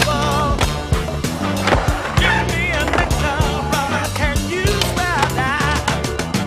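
Skateboard sounds: wheels rolling on concrete, trucks grinding a ledge and board clacks on landing. They sit over a loud music soundtrack.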